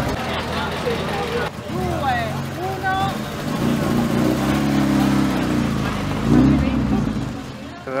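A classic car's engine running steadily, growing louder about six seconds in and then fading as the car pulls away, with voices around it.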